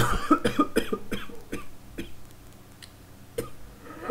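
A man coughing into his hand: a fit of quick coughs in the first second and a half, then two single coughs later.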